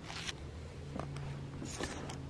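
Packing tape and plastic wrap being pulled and torn off a cat toy, as a few short rasping rips: one at the start, one about a second in and one near the end.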